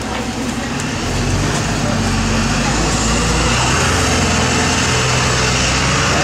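Street traffic noise: a motor vehicle's engine running close by as a low steady hum that grows louder about a second in, over a constant haze of road noise.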